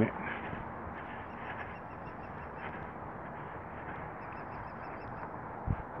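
Steady outdoor background noise picked up by a phone while walking on a sidewalk. Twice, a faint run of rapid high chirps sounds over it, and there is a single soft thump near the end.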